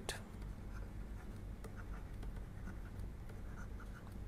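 Faint ticking and scratching of a stylus writing on a tablet screen, over a low steady hum.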